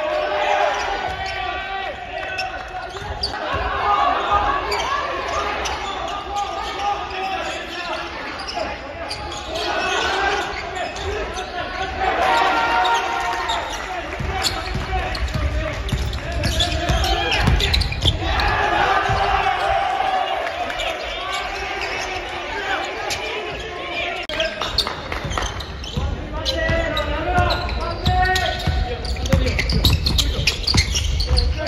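Basketball game sound in a large gymnasium: a ball bouncing on the hardwood court, with voices from players and the bench throughout, echoing in the hall.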